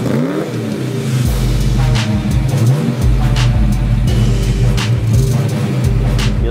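Music with a heavy beat, with a V8 engine of a 1978 Pontiac Trans Am revving up once near the start.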